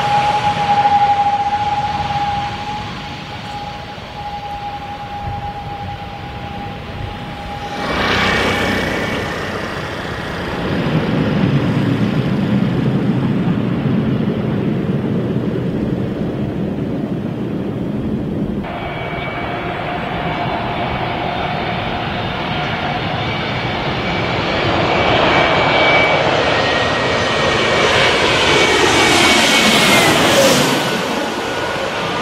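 Airliner engines heard close to a runway. First a twin-turboprop airliner with a steady whine, then a deeper, rougher engine sound while a turboprop runs on the runway. Then a twin-jet airliner's whine builds as it flies low overhead and drops in pitch as it passes near the end.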